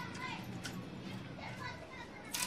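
Faint background voices of children playing, with a few light clicks.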